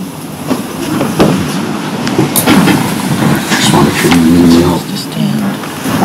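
Indistinct talking, with scattered fragments of voices, most noticeable about four seconds in, over steady room noise.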